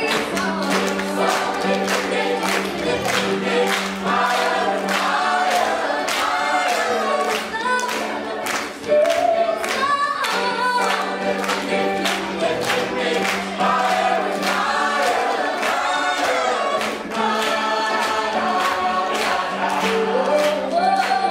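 A youth choir singing an upbeat song in parts, over a steady beat about twice a second.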